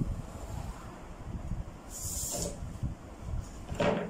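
Handling sounds of pattern drafting on paper: a brief scratchy slide over the paper about two seconds in, then a short knock near the end as the drafting curve is lifted off and set down.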